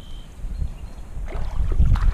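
Wind buffeting the body-mounted camera's microphone as a low rumble. About halfway through, footsteps start crunching on the gravel creek bank and the sound grows louder.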